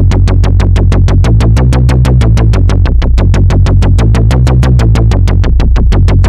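Novation Bass Station II analog synthesizer playing a preset: a fast, even run of short bass notes with sharp, bright attacks, about eight a second, the pitch stepping between notes as keys are held.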